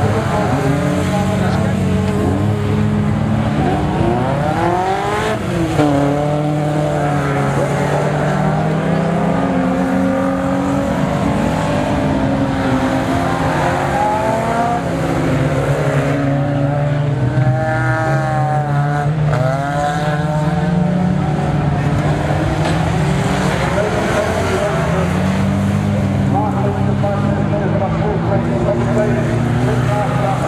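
Several race car engines revving together, their pitch rising and falling as the cars accelerate and lift off around the track. The clearest sweeps come about 4–6 seconds in and again around 18–20 seconds.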